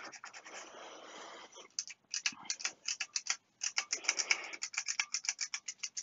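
A tissue rubbed over a circuit board to wipe off excess contact cleaner: first a continuous rub, then a fast run of short scratchy strokes, several a second.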